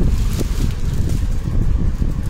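Low, steady rumble of wind noise on the microphone, air buffeting the mic, with nothing else clearly audible.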